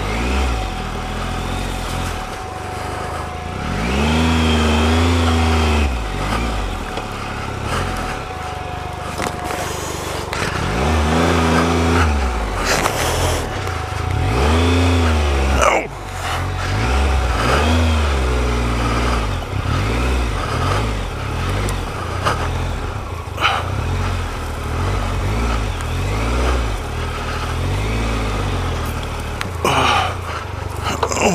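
Triumph Explorer XCa's three-cylinder engine revving up and down in short bursts of throttle, every couple of seconds, as the motorcycle is ridden slowly off-road through long grass. A few sharp knocks come through over the engine.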